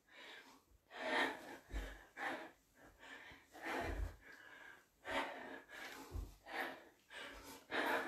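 A woman breathing hard in short, gasping breaths from the exertion of squat jumps, with a dull thud of her landing about every two seconds.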